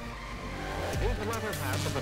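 A low rumble swelling gradually under the start of an end-screen soundtrack. A man's narrating voice comes in about a second in.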